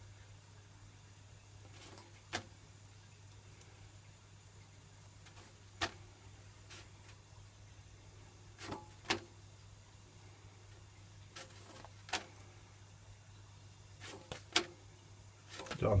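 Steady low hum of a high-output wok gas burner, with sparse sharp crackles, about eight in all, from a poppadom toasting on the grate over its flames. A louder rustle and clatter comes near the end as the poppadom is lifted off.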